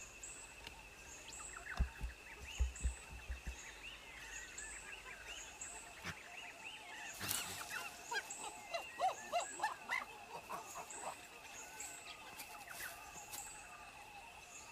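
Woodland ambience of birds and insects: a steady high-pitched drone, a short high chirp repeating about every three-quarters of a second, and a flurry of bird calls in the middle. A few dull low thumps sound around two to three seconds in.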